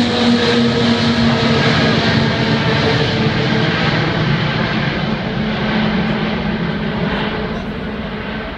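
Antonov An-225's six D-18T turbofan engines at takeoff power as the aircraft climbs away overhead: loud, steady jet noise with a droning hum in it that fades after a few seconds, the whole sound slowly dying away over the last few seconds.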